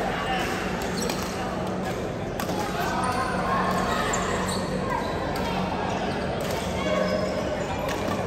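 Badminton play in an echoing sports hall: sharp, scattered racket strikes on shuttlecocks from several courts, with players' voices mixed in.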